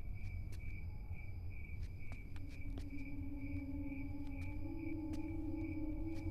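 Film soundtrack ambience: a steady, pulsing high cricket-like chirp over a low rumble, with faint scattered clicks. About two seconds in, a sustained low drone from the score comes in and steps up slightly in pitch a little past halfway.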